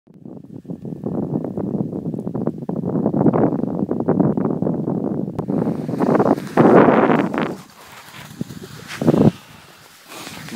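Skis running over spring snow with wind buffeting the microphone: a loud, rough scraping rush that drops away about three-quarters of the way through, with one short burst near the end.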